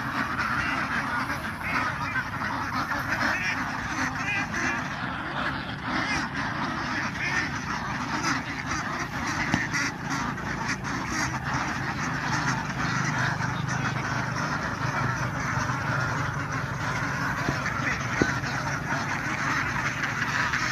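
A large penned flock of domestic ducks, around a thousand birds, quacking together: many calls overlap into one continuous, steady chorus.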